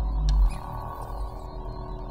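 Ambient trance electronic music: a deep synthesizer bass swell that peaks and drops away about half a second in, with a brief airy hiss layered high above it.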